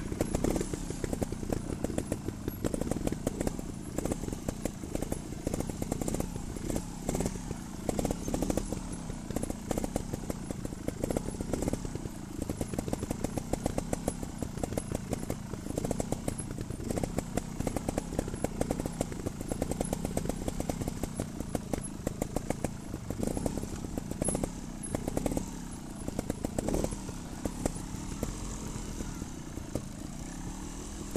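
Trials motorcycle's single-cylinder engine running at low revs while riding a rough trail. The revs rise and fall over and over with the throttle, and choppy knocks and rattles run through it.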